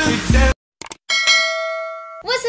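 Background music cuts off, and after a brief silence and a couple of light clicks a single bell-like ding sound effect rings out and slowly fades.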